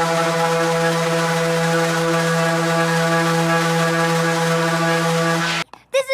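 Random orbital sander running steadily on a pine 2x4, a constant motor hum over the hiss of the sanding pad on the wood. It cuts off suddenly near the end.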